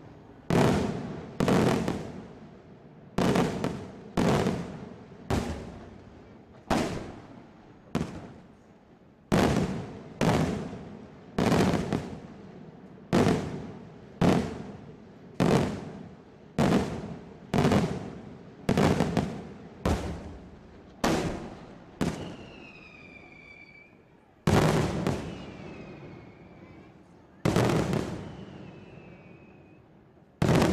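Daytime aerial fireworks display: a steady string of loud shell bursts, about one bang a second, each followed by a fading echo. After a short pause near the end, two more bangs follow.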